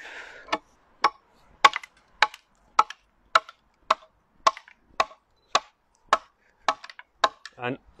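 Side axe chopping into a split ash stave: a run of about fourteen short, sharp strikes, evenly spaced at roughly two a second, cutting hatch marks up the side of the stave.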